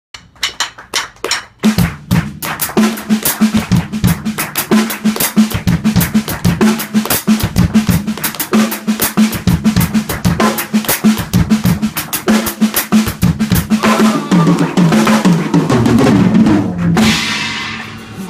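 Drum kit played solo: a few spaced hits, then a fast, dense pattern across snare, bass drum and toms, closed by a cymbal crash that rings out and fades near the end.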